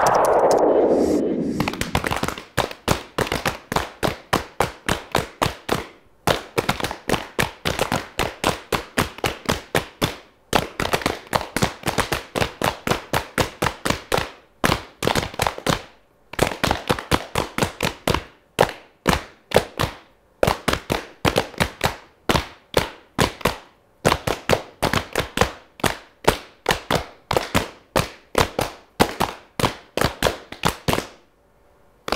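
A falling whoosh in the first second or so, then a group of people slapping their knees with their hands in unison: sharp slaps at about three a second, in phrases broken by short pauses.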